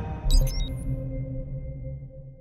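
Electronic logo sting: a low hit with a bright, chiming sparkle about a third of a second in, followed by held electronic tones that die away.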